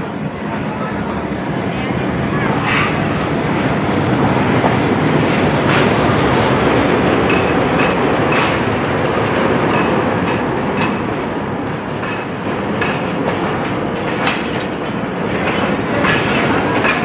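A diesel locomotive and its passenger train pull slowly into a station past the platform, the engine noise swelling to its loudest as the locomotive goes by in the first half. The coaches that follow clack every second or two as their wheels cross rail joints.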